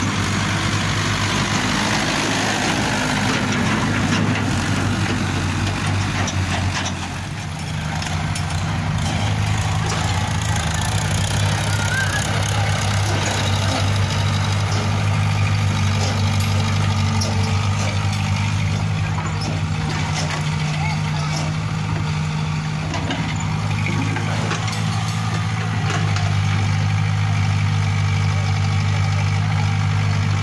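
Diesel tractor engine running as the tractor pulls a loaded trolley over mud. After a brief dip about seven seconds in, a steady, deep diesel engine drone from a small CAT excavator working at the dig, with a few faint knocks.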